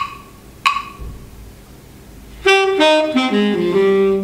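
Two sharp, evenly spaced clicks, then from about two and a half seconds in a recorded tenor saxophone playing a jazz lick alone, with no backing.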